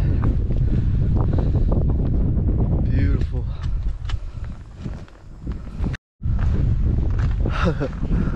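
Wind buffeting the camera microphone, a heavy low rumble, with footsteps on rock. The sound cuts out completely for an instant about six seconds in.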